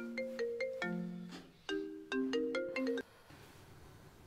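Smartphone ringing with a melodic ringtone: a short tune of struck, ringing notes that repeats, then stops about three seconds in as the call is answered.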